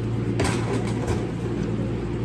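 Steady low background hum, with a single faint click about half a second in.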